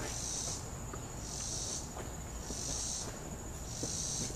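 Insects calling outdoors: a high buzzing chirp that repeats about once a second, each lasting about half a second, over a faint low rumble.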